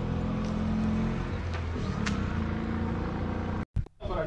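An engine running steadily nearby, a low hum with a few fixed tones, breaking off abruptly for a moment near the end.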